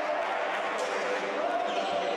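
Several voices of volleyball players and spectators echoing in a sports hall between rallies, with a faint thud about a second in.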